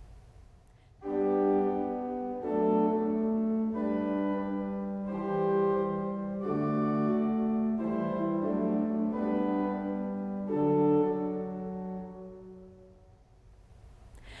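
Pipe organ (John-Paul Buzard Opus 7, 1991) playing a slow string of sustained chords, changing about every second or so, the last one fading away near the end. It is played as a practice drill: the chords are separated while one voice moves smoothly between them.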